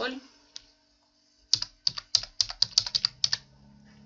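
Computer keyboard being typed on: a single click about half a second in, then a quick run of about a dozen keystrokes lasting about two seconds as a password is entered.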